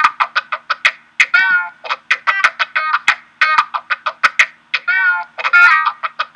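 Recorded guitar track playing back: a quick run of short picked notes, a few slightly bent, from the left and right guitar parts of a stereo recording split into two mono tracks.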